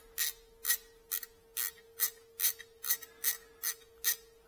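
Ratchet wrench clicking in a steady run of about two to three clicks a second as it loosens an exhaust header flange nut on a BMW R nineT's boxer cylinder.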